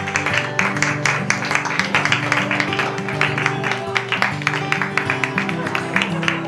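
Music led by a fast, steadily strummed acoustic guitar over held bass notes.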